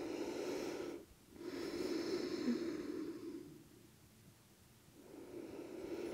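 A woman breathing slowly and deeply, close to the microphone: one breath ends about a second in, a longer one follows, and after a pause another begins near the end.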